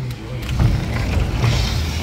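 Sliding glass balcony door being pulled open along its track, a low rumble that swells about half a second in.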